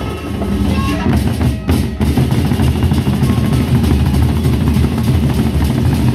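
Gendang beleq ensemble, large Sasak double-headed barrel drums, playing a fast, dense interlocking rhythm, with a brief lull just before two seconds in.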